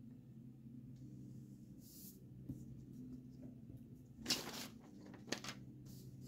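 Pen writing on paper in a few short scratchy strokes, the loudest a little after the middle, over a faint steady low hum.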